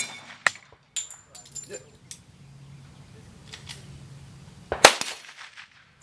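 Pistol fire at steel silhouette targets: a loud, sharp shot about five seconds in. About a second in, a short metallic ring from a steel target struck by the previous shot, with a few fainter cracks between.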